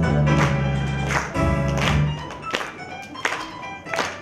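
Instrumental pop backing track with a steady beat about every 0.7 seconds and no singing. The bass is full in the first half and thins out after about two seconds.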